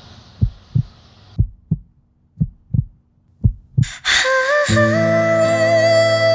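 Heartbeat sound effect: four deep lub-dub double thumps about a second apart, then a music cue swells in about four seconds in, with sustained chords and a melody line.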